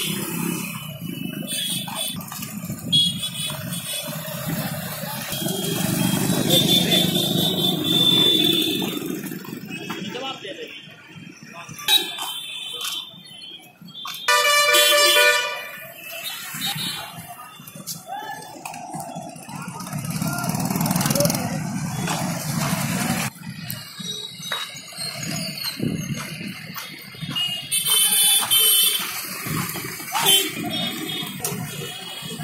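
Busy street traffic, motorcycles and other vehicles running past, with horns honking several times. One long, loud honk comes about halfway through. Voices talk in the background.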